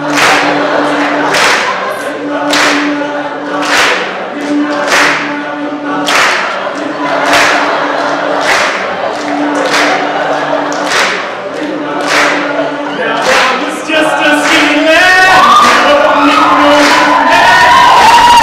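All-male a cappella group singing. Low voices repeat a held bass pattern, with a sharp percussive hit about every second and a quarter. About 14 s in, a louder lead voice comes in over them and the whole group gets louder.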